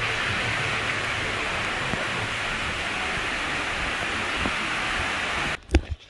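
Waterfall pouring over rocks into a pool: a steady, even noise of falling water that cuts off abruptly near the end, followed by a couple of sharp knocks.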